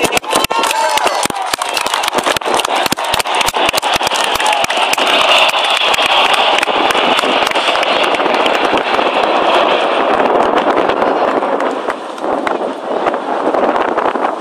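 The Red Arrows' formation of BAE Hawk jets passing overhead: a broad jet rush that builds from about four seconds in, peaks, then fades away near the end. Wind buffets the microphone with constant crackling knocks throughout.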